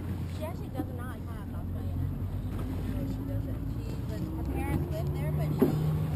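A motor tender's engine running with a steady low hum that shifts slightly higher in the second half. Faint voices call out over it, and there is a single knock near the end.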